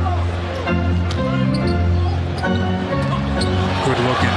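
A basketball being dribbled on a hardwood court, heard as scattered sharp bounces under loud music with a steady bass line.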